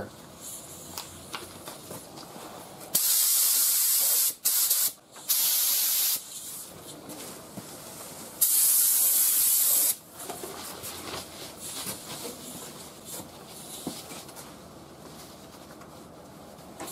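Compressed-air spray gun (3M Performance, 1.4 mm tip at 15–19 psi) spraying clear coat in trigger-pulled passes: four bursts of loud hiss, the first about three seconds in, a short one and another right after, then the longest from about eight to ten seconds.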